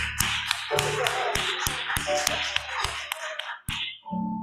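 Scattered clapping from a small congregation, a few people clapping irregularly at several claps a second, dying away shortly before the end.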